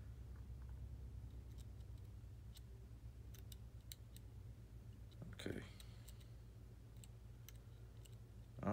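Faint, scattered light clicks of a pointed tool working the tiny DIP switches on an RC gyro receiver, over a steady low hum. A brief vocal sound comes about five and a half seconds in.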